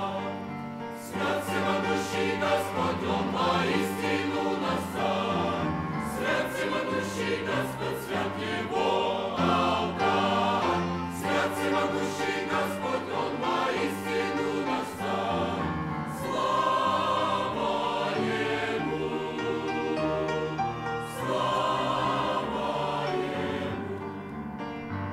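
A mixed choir of men's and women's voices singing a hymn in parts, holding sustained chords that change every second or so.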